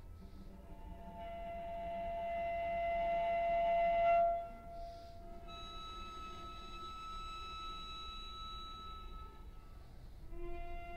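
Solo cello in scordatura tuning playing long, sustained bowed notes. The first note swells steadily louder for about three seconds and breaks off just past the midpoint. A quieter, steady held note follows to the end.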